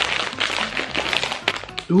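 A plastic Lay's potato-chip bag being pulled open and rummaged by hand, giving a dense, irregular crinkling crackle.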